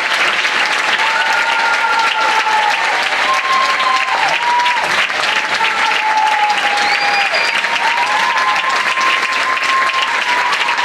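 Large audience applauding steadily, with long high cheers sounding over the clapping.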